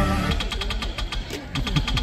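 Loud music with a heavy bass beat cuts off abruptly a moment in. It is followed by a quick, irregular run of sharp clicks or claps, several a second, over a low murmur.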